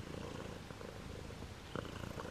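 Domestic cat purring steadily and faintly, close to the microphone, with a soft tap near the end.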